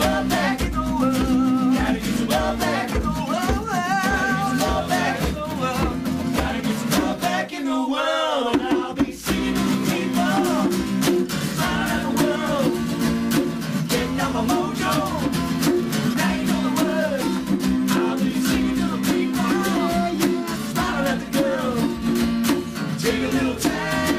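Acoustic guitar strumming chords under a man singing a rock song. About eight seconds in, the guitar stops for a second or so, leaving the voice alone, then comes back in.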